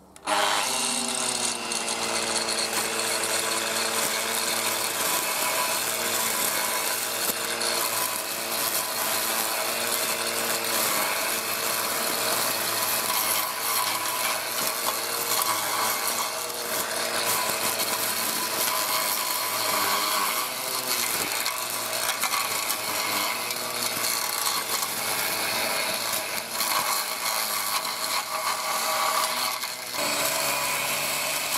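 Electric angle grinder fitted with a metal blade, working as a push grass cutter, running at speed and cutting through tall dry grass. Its motor whine wavers in pitch as the blade meets the grass, over the rasp of cut stalks, and comes in abruptly at the start.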